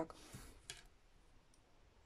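Near silence: room tone, with a faint breath-like hiss just after the start and one faint click about two-thirds of a second in.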